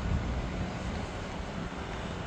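Low, fluttering wind rumble on the microphone over a steady outdoor background hiss.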